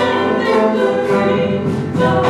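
Live gospel music: two women singing into microphones, backed by a brass section of trumpets, saxophones and trombone.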